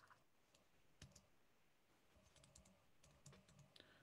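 Near silence with a few faint, short clicks: the video call's audio drops out, the speaker's connection breaking up.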